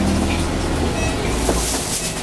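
City bus driving, heard from inside near the front: a steady low drone with road noise, and a short hiss near the end.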